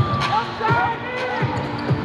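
A basketball dribbled on a hardwood court, bouncing several times at roughly half-second intervals, under the voices of the arena crowd.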